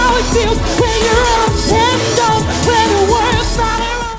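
Live pop band performance: a woman sings a melody into a microphone over keyboards and a steady beat.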